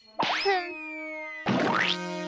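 Two comic cartoon sound effects, each a quick springy upward glide like a boing, one just after the start and one about a second and a half in. Each is followed by sustained ringing tones that fade slowly.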